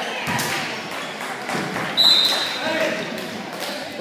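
Basketball bouncing on a gym floor amid background crowd voices, with one short, sharp referee's whistle blast about halfway through, the loudest sound.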